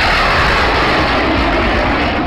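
Surface-to-air missile's rocket motor at launch: a loud, steady rushing noise as the missile leaves the launcher and climbs away.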